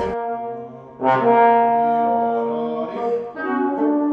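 Trombone playing long sustained notes in a chamber-music rehearsal. A held note fades out, a new long note enters about a second in, and the line moves through shorter notes near the end, with a quieter lower wind part underneath.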